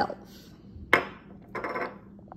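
A glass hot-sauce bottle set down on a granite countertop: one sharp knock about a second in, followed by a shorter, softer sound near the end.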